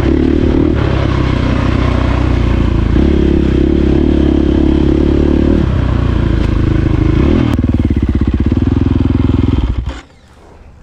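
KTM dirt bike engine running under throttle, its pitch stepping up and down several times. About three-quarters of the way in it falls to a low, pulsing run, then cuts off abruptly just before the end.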